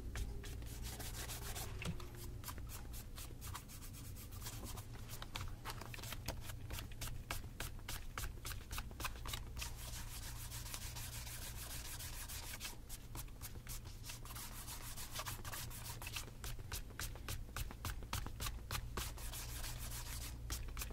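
A cloth rubbed briskly back and forth over the leather upper of an Allen Edmonds Acheson tassel loafer, buffing it in a steady run of quick, short strokes.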